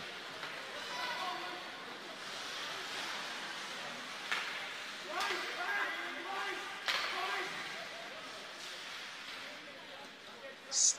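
Ice hockey rink sound during live play: a steady hiss of skates and echoing hall noise with faint distant voices, and two sharp knocks of puck or stick against the boards about four and seven seconds in.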